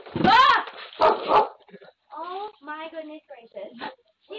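A dog barking loudly twice, near the start and about a second in, picked up by a doorbell camera's microphone. A person talks over the last two seconds.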